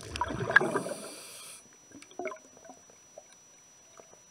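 Underwater, a diver's exhaled air bubbles gurgling out in a burst lasting about a second and a half, followed by a few faint gurgles and clicks.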